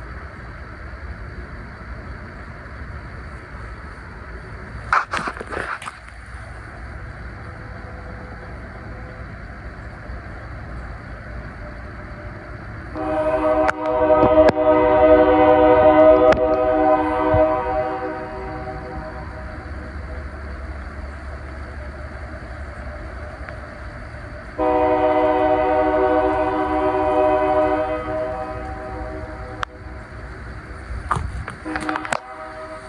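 Train horn sounding two long steady blasts, the first lasting about five seconds and the second, shorter one about ten seconds later, over a constant low rumble. A single sharp click comes a few seconds before the first blast.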